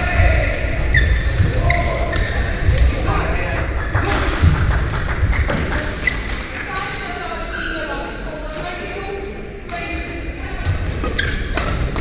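Badminton rally in an echoing indoor hall: sharp strikes of racket on shuttlecock and thuds of players' feet on the court, over voices and chatter in the hall. It goes quieter between points, and strikes start again near the end as the next rally begins.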